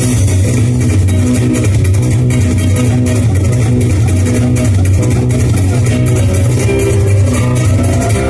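Recorded dance music played over PA loudspeakers, with a steady beat and a strong bass line.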